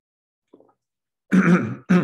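A man clearing his throat with two short, loud coughs in quick succession about a second and a half in, just after taking a drink.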